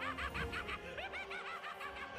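High-pitched laughter, a fast run of short 'ha' notes, each rising and falling in pitch, too high for the men's voices and so from a character in the episode's soundtrack.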